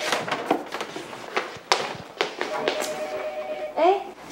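A run of taps and knocks from objects being handled, with a steady held tone in the second half.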